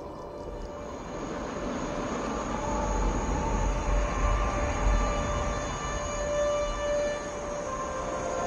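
Film soundtrack music: sustained held tones over a low rumble that swells through the middle.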